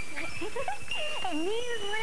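A person's voice sliding up and down in pitch over background music with held high electronic notes.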